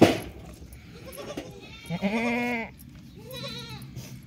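A goat bleating twice, a loud wavering call about two seconds in followed by a fainter, shorter one. A sharp knock sounds right at the start.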